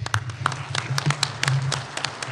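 Audience applauding at the end of a talk: scattered, irregular hand claps.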